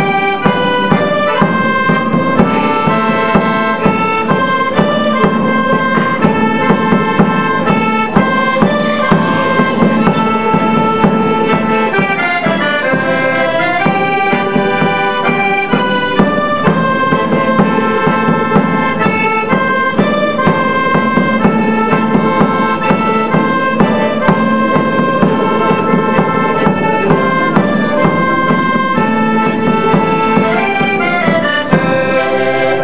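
Portuguese folk music played live by a small ensemble: an accordion carries the melody in steady held notes, with acoustic guitars and a mandolin accompanying in an even rhythm.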